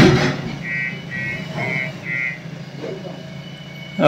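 JCB backhoe loader's diesel engine running steadily, with four evenly spaced electronic beeps of its reversing alarm about a second in as the machine manoeuvres.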